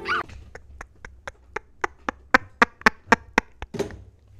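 A woman laughing hard in short, breathy pulses, about four a second, that build up and stop just before the end.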